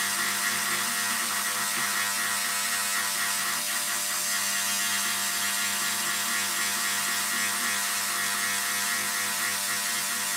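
Corded handheld rotary carving tool running steadily, its burr cutting into a turned wooden piece as it is engraved by feel.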